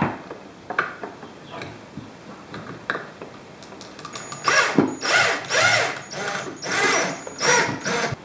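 Cordless drill driving screws into a timber skirting board, fixing a surface-mount TV socket. A few light handling clicks come first, then, about halfway in, the drill runs in a string of short trigger bursts, its motor speeding up and slowing within each one.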